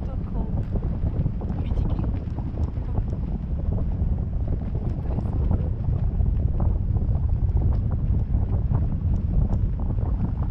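Wind buffeting the microphone of a camera on a parasail bar in flight: a steady low rumble.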